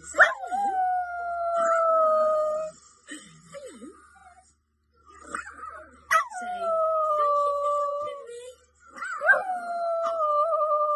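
A small terrier howling: three long howls, each jumping up sharply at the start and then sliding slowly down in pitch. The first comes right at the start, the second about six seconds in, and the third near the end. A woman laughs briefly at the start.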